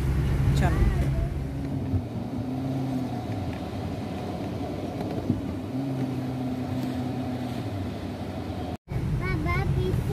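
Car engine and road noise heard from inside the cabin while driving: a steady low rumble with a droning hum that rises in and fades out twice. Near the end the sound cuts out for an instant, and voices follow.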